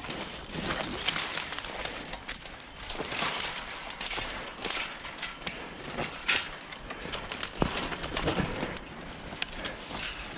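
Dead tree branches and twigs rustling, crackling and snapping irregularly as someone climbs a tree, with branches scraping close against the camera.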